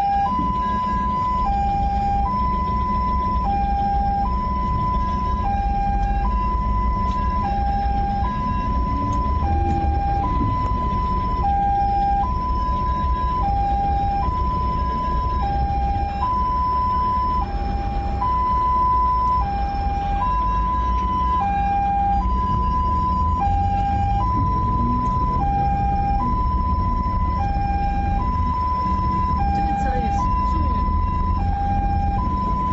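Ambulance's hi-lo two-tone siren, alternating evenly between a higher and a lower tone about once a second each, heard from inside the ambulance cab over its engine and road noise. It is sounding again and again to make the car ahead give way.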